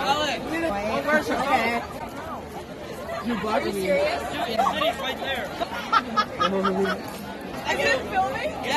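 Chatter of a group of teenagers: several voices talking over one another, with no clear words.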